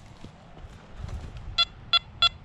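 Low handling noise of soil being worked in a gloved hand. About a second and a half in, a metal detector starts giving short high beeps, about three a second, sounding on a metal target in the dug soil.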